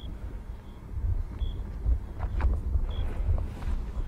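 Low, gusty rumble of wind buffeting the microphone, with a few short high chirps scattered through it.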